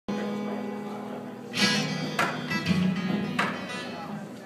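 Acoustic guitar strummed: a chord rings out, then several sharp strums follow from about a second and a half in. It is heard through a phone's microphone from the back of the room.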